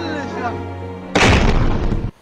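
Explosive charge demolishing a house, heard from a distance: a sudden loud boom a little past a second in that rumbles on for most of a second and then cuts off suddenly. A steady background music bed runs beneath it before the boom.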